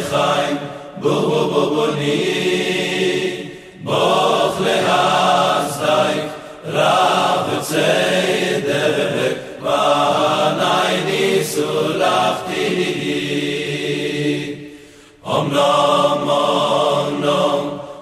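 A Hasidic choir singing a melody in phrases a few seconds long, with short breaks between them. The longest break comes about fifteen seconds in.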